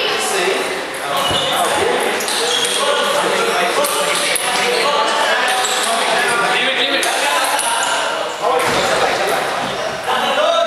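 Indistinct chatter of onlookers echoing in a large hall, with a few light taps of a table tennis ball being bounced between points.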